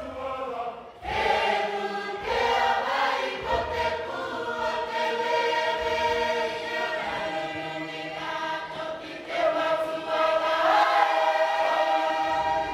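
A choir of many voices singing sustained chords in harmony, with a short break about a second in before the voices come back in.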